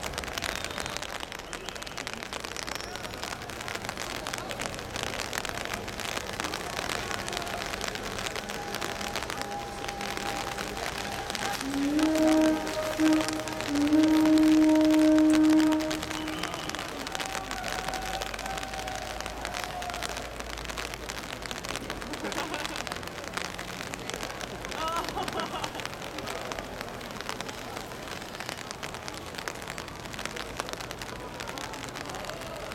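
Rain pattering steadily on an umbrella. About twelve seconds in, a loud steady low tone sounds twice, first briefly, then for about two seconds.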